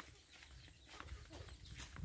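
Faint footsteps on a dirt yard, a few soft steps, over a quiet low rumble.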